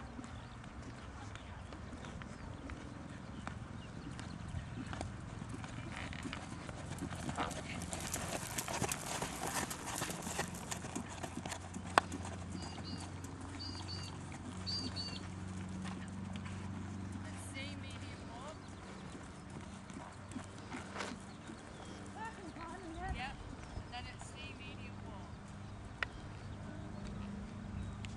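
A horse's hoofbeats on a sand arena as it works through a dressage test, with voices in the background, short high chirps and two sharp clicks, about twelve and twenty-six seconds in.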